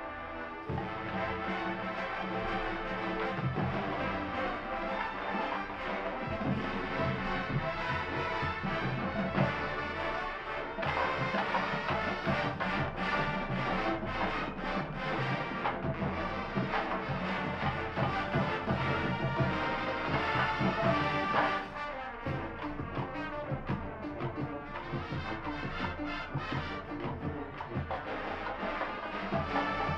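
Marching band playing, brass and drumline together, with many drum strokes through the music. It grows louder about a second in and drops back somewhat about three-quarters of the way through.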